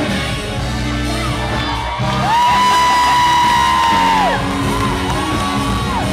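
Live R&B band music played loud in a large hall, with a high-pitched voice whooping: one long held whoop of about two seconds starting about two seconds in, sliding up at its start and down at its end, and a shorter one near the end.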